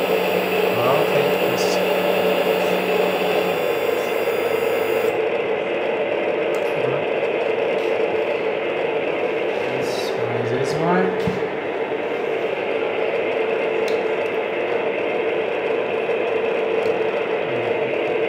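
Hydraulic pump of an RC hydraulic excavator running steadily, a constant mechanical hum. There is a short rising sound about eleven seconds in.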